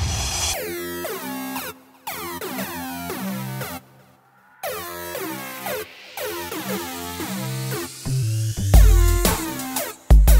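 Electronic music with a steady rhythm of synth notes. It drops out briefly about four seconds in, and a heavy bass line comes in near the end.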